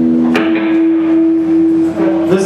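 Electric guitar left ringing on one sustained note as the rest of the band stops, with a single sharp pick or string click about a third of a second in.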